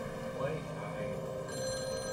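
Telephone ringing, starting about one and a half seconds in as a steady high ring, over a low, even background.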